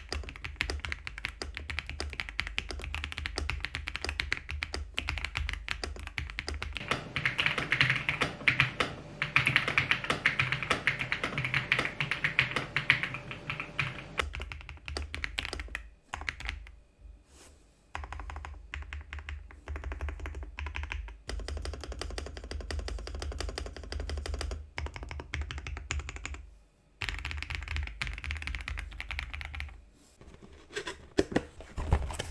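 Typing sound test on an Ajazz AK820 Max mechanical keyboard: fast, continuous clatter of keystrokes. It is loudest and busiest in the middle, with a couple of short pauses later on.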